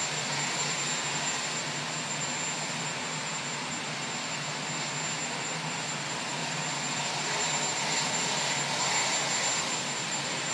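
Turbine helicopter engines running steadily, an even rushing drone with a thin high whine held throughout.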